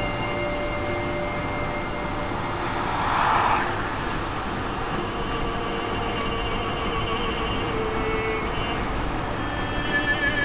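Car driving at road speed, heard from inside: steady tyre and engine noise, with a brief louder rush of noise about three seconds in.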